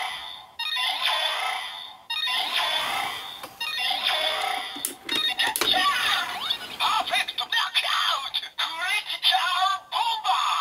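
Kamen Rider Ex-Aid DX Gamer Driver toy belt with the Gashat Gear Dual Another, playing its electronic transformation sounds through the toy's small speaker: a recorded announcer voice calling out "Click and Open!" and "Critical Bomber!" over a synth jingle with sweeping sound effects. This is the Another version's transformation jingle, a little different from the standard Paradox one.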